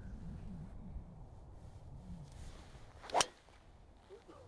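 A driver tee shot: a brief swish of the club, then one sharp crack of the clubhead striking the ball about three seconds in, the loudest sound here. Low wind rumble on the microphone underneath.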